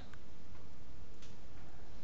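Steady room tone, an even hiss and hum, with one or two faint ticks.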